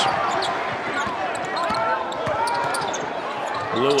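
Basketball being dribbled on a hardwood court, a string of short taps, over the steady noise of a large arena crowd.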